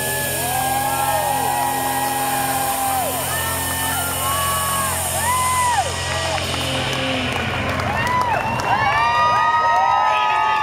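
A live rock band's closing chord ringing out, with cymbal wash, under a cheering, whooping concert crowd. The chord cuts off about seven seconds in and the cheering and whoops carry on.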